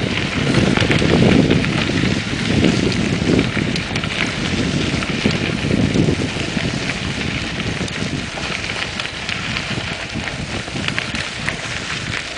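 Wind buffeting the microphone of a camera on a moving mountain bike, over a steady crackling rumble of the tyres rolling on a rough dirt path. The low gusts are heaviest in the first half.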